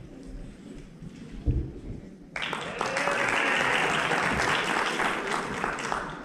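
Audience applauding, breaking out suddenly a little over two seconds in and dying down near the end.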